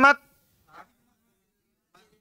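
A man's voice finishing a phrase right at the start, then near silence with only a faint, brief murmur a little under a second in.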